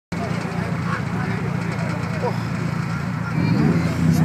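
Car engines running steadily at the start line, with one revving up near the end, over the chatter of a crowd.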